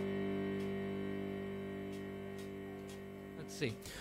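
A single chord played on an instrument, struck just before and held, slowly dying away, then stopping near the end.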